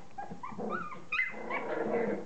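Three-week-old standard poodle puppies whimpering and giving small squeaky yips, several short calls in quick succession.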